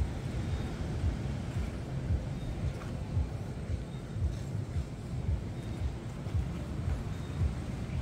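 Low rumbling noise with soft uneven thumps about twice a second: handling and wind noise on the microphone of a camera carried by someone walking.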